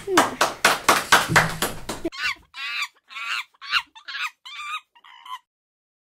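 A run of about seven short, chicken-like calls over three seconds, each rising and falling in pitch. They start about two seconds in, and the last call comes a little before the end.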